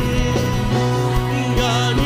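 Live worship band playing a slow praise song: sustained synthesizer-keyboard chords over light drum strokes, with a singing voice coming in near the end.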